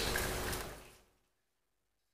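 Faint room hiss that fades away about a second in, leaving dead silence.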